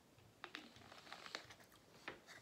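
Faint clicks and crinkling of a plastic screw cap being twisted back onto a plastic soda bottle, with two sharper clicks about half a second in and again past the one-second mark.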